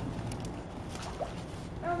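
Corgi dog-paddling across a swimming pool, with faint water sloshing and small splashes.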